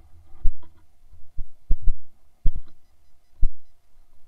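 Six or so dull low thumps at irregular spacing, with a faint steady hum underneath: knocks and jolts picked up by a body-mounted camera as it moves through grass and undergrowth.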